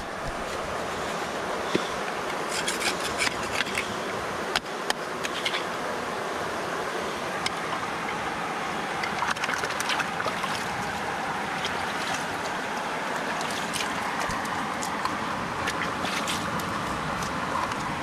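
Steady rush of a flowing river, with scattered small clicks and scrapes of grit and rock being worked out of a rock crevice into a gold pan.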